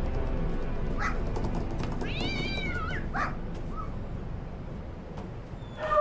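Cat meowing: one drawn-out meow about two seconds in that rises and then falls in pitch, with shorter cries just before and after it. Faint background music runs underneath.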